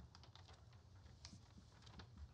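Near silence: room tone with faint, irregular clicks of typing on a computer keyboard.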